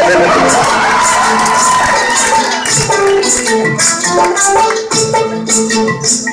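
Loud dance music with a regular percussion beat, playing in a large hall.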